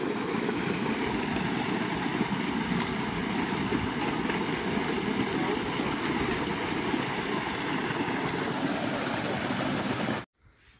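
Water gushing steadily from an irrigation pipe into a stone tank and spilling over its edge onto stones in a continuous splashing rush.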